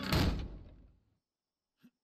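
A heavy door slamming shut: one sudden thud with a low boom that dies away within about a second.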